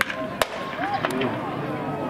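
Two sharp cracks of baseball impacts during infield fielding practice, one at the start and a louder one under half a second later, over a background of distant voices.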